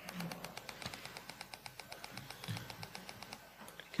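A quick, even run of light clicks, about eight a second, from computer controls being worked to zoom the code editor's text larger. The clicks stop just before the end.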